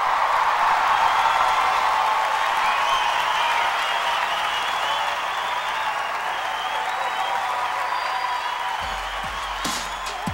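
A large concert audience applauding and cheering, the applause slowly dying down. Near the end, the band starts to play with low drum beats.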